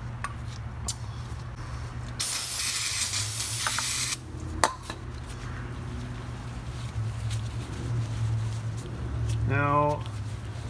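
A spray hissing for about two seconds, a couple of seconds in, as brake parts are sprayed clean, followed by a sharp click and light handling noise over a low steady hum.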